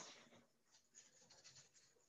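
Near silence, with a few faint light scratches and ticks, like small handling sounds at a work surface.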